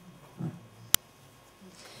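A pause in speech holding a single sharp click just under a second in, with faint bits of voice before and after it.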